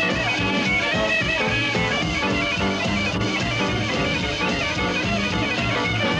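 Swing jazz violin playing a tune, bowed, over a steady low beat from a rhythm accompaniment.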